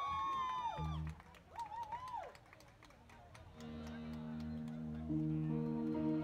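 Electric guitar starting a slow intro with soft, sustained chords about halfway through, the chord changing a little over a second later. Before it, two short voice calls rise and fall.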